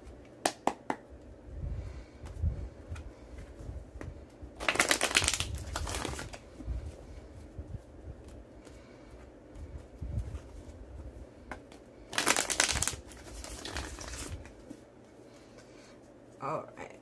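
A tarot deck being shuffled by hand: a few sharp card clicks, then two bursts of rapid card flicking, one about five seconds in and one about twelve seconds in, with soft handling of the cards between.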